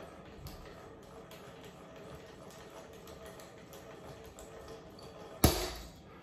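50 lb nylon monofilament fishing line snapping under tension on a force-gauge test stand: one sharp, loud crack about five and a half seconds in, as the line parts at 49.4 lb. Before it, only a faint steady hum while the load builds.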